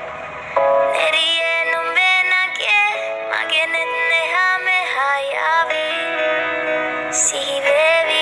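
A recorded song with a high singing voice carrying a winding, ornamented melody full of bending notes over backing music. It is softer for the first half second, then comes in louder.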